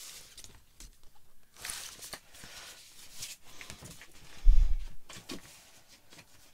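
Vinyl record and its sleeve being handled: soft rustling and sliding of paper and card with light clicks, and one loud, dull thump about four and a half seconds in.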